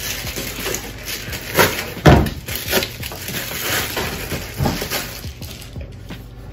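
Rustling and crinkling of a plastic mailer and packing paper as a parcel is unpacked, with a few sharp knocks on a plastic folding tabletop, the loudest about two seconds in.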